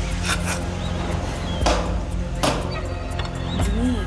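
Hammer striking a nail into a wooden block: two light taps, then two heavy blows about a second apart.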